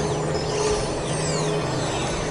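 Dense experimental electronic noise music: a steady low drone under a wash of hiss crossed by many quick pitch sweeps, rising and falling. A held mid tone fades out about halfway through.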